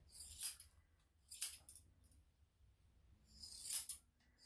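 Steel grooming scissors snipping the hair on a dog's face: a few short, crisp metallic snips, one near the start, one about a second and a half in, and one near the end.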